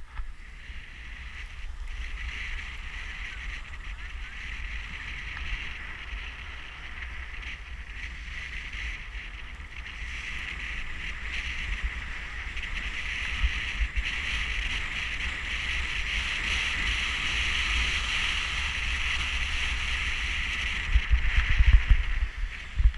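Skis sliding over packed snow, a steady hiss, with wind rumbling on the microphone. Both get louder as the run goes on, with a few sharp thumps near the end.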